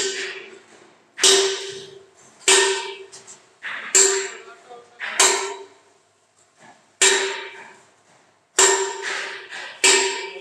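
Hammer blows on a sheet-steel concrete mixer drum: about eight strikes roughly a second and a half apart, each ringing out with a steady metallic tone that fades before the next.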